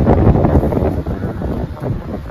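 Loud, irregular low rumble of buffeting on the microphone, fading over the two seconds.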